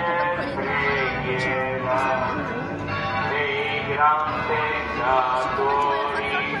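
A devotional hymn sung in slow melodic phrases with held, wavering notes, over low crowd noise.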